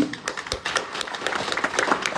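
Audience applauding: a fast, irregular run of hand claps.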